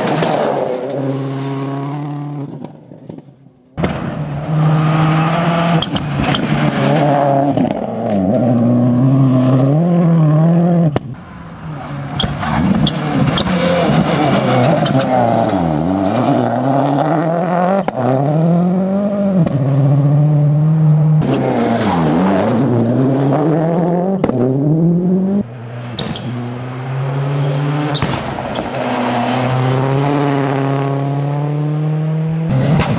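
Ford Focus WRC rally car's turbocharged four-cylinder engine revving hard at full speed through the gears, its pitch climbing and dropping with each shift and falling as the car goes by. Several passes are joined together, with sudden breaks about four, eleven and twenty-five seconds in.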